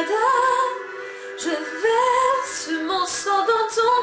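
A woman singing a slow ballad solo, holding long notes and gliding between pitches, with a softer passage about a second in.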